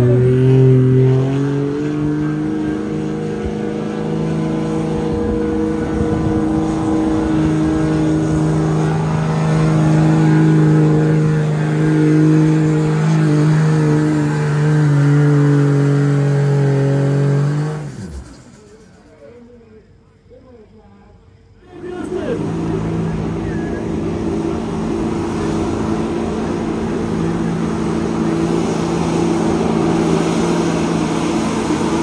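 Pickup truck engine held at high revs under load while pulling a weight-transfer sled, steady and loud. A few seconds past halfway it breaks off, then a second pickup's engine runs at high revs, pulling the sled.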